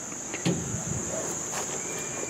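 Steady high-pitched chirring of crickets or similar insects, with a soft thump about half a second in.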